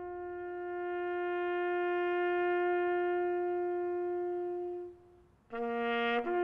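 Solo brass music: one instrument holds a single long, steady note for about five seconds, then after a brief break near the end plays a lower note.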